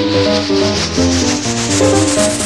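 Peak-time techno at 126 BPM in D minor: short synth chord notes over a pulsing bass with fast even hi-hat ticks, and a noise sweep rising steadily higher in pitch.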